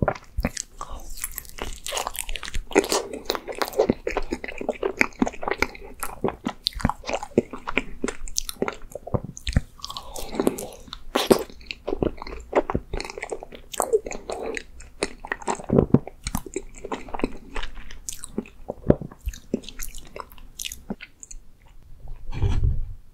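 Close-miked biting and chewing of a Baskin-Robbins ice jeolpyeon, a frozen rice cake filled with red-bean ice cream: a dense, irregular run of quick mouth clicks and crackles.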